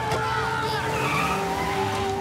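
Cartoon sound effects of a car driving off fast, with an engine note and a tyre skid.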